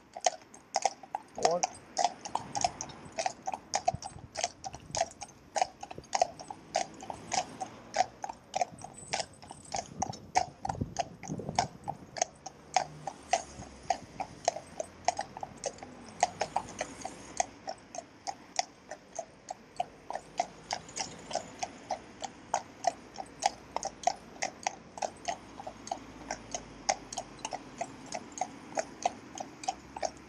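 Hooves of a pair of Friesian horses clip-clopping on a tarmac road at a steady walk, about three hoofbeats a second.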